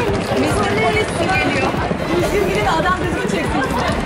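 Several women's voices chatting over one another while walking, over the low rumble of wheeled suitcases rolling on paving stones.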